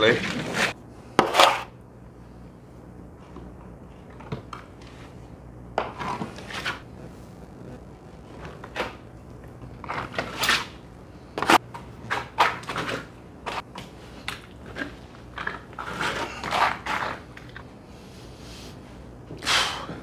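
Intermittent short scrapes of a steel plastering trowel spreading wet plaster and loading from a hawk, irregularly spaced, over a steady low hum.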